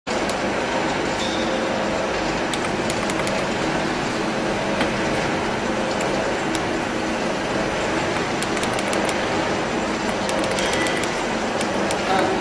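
Factory machinery running with a steady noise and a few faint hum tones, with scattered light clicks.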